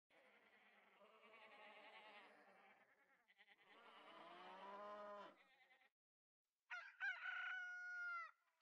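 Farm animal sound effects: two faint sheep bleats, then a louder rooster crow starting near the end.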